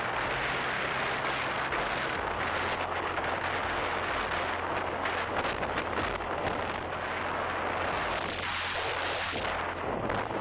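Steady rush of wind buffeting a head-mounted Google Glass microphone while riding a road bicycle at speed, mixed with road noise.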